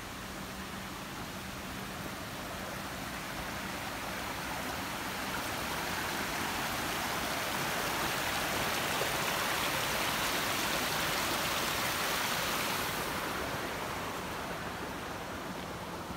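Small mountain stream rushing over rocks. It grows louder toward the middle and fades over the last few seconds.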